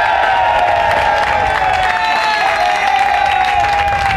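Baseball players in a dugout clapping and cheering, with one long drawn-out shout held over the clapping that sinks slightly in pitch.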